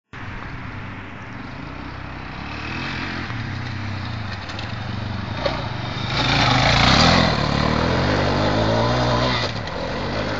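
Suzuki DR-Z400's single-cylinder four-stroke engine running as the bike rounds a banked dirt corner, growing louder as it approaches and loudest about six to seven seconds in as it passes close, then running on under throttle and easing off near the end.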